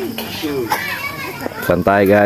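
Several people's voices talking and calling out over one another, with one loud voice starting near the end.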